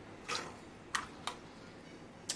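A steel spoon scooping soaked yellow peas from a steel bowl into a pressure cooker: three faint, brief taps of spoon on metal and peas dropping into the pot.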